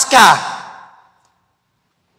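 A man's amplified voice finishing a spoken word with a falling pitch and a breathy tail that fades out within the first second, then dead silence.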